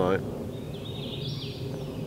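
A bird singing in woodland: a high, warbling phrase of quick gliding notes, lasting about a second and a half, starting about half a second in.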